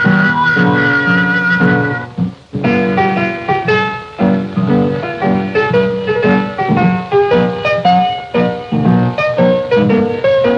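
Early jazz played on trumpet and piano: a slow horn melody over piano chords, with a short break about two and a half seconds in.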